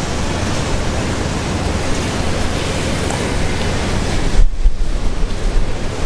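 Steady, loud hiss of rain falling on an umbrella held just above the microphone. About four and a half seconds in, a low rumble of wind buffeting the microphone briefly takes over.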